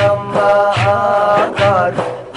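A voice singing a long, wavering melody over instrumental accompaniment with a regular low drum beat: a Turkish Sufi hymn (ilahi).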